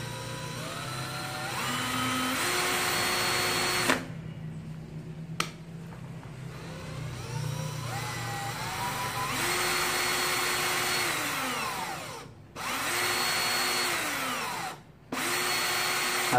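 Makita cordless drill-driver running free with no load, its variable-speed trigger squeezed four times: each run's motor and gear whine climbs in pitch from slow, holds steady at speed, then stops or winds down in pitch as the trigger is released.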